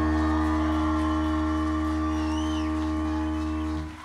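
A rock band's final chord on amplified electric guitar and bass, rung out and held, slowly fading with heavy low bass. A few faint gliding whistles sound over it, and the chord cuts off sharply near the end.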